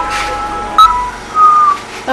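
Background music carried by a high, whistle-like melody: two held notes sounding together, then louder short notes past the middle, one falling slightly in pitch.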